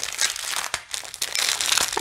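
Small clear plastic packet of diamond-painting drills crinkling as it is handled, with irregular crackles throughout.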